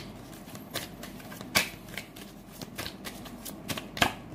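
A tarot deck being shuffled by hand: a run of quick, irregular flicks and slaps of cards against each other, with one sharper slap about a second and a half in.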